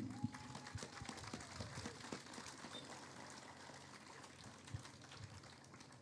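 Faint, scattered applause from a crowd, fading away.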